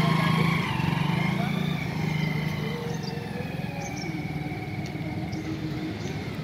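Small commuter motorcycle engine running as the bike pulls away and rides off, its steady note growing fainter after about a second.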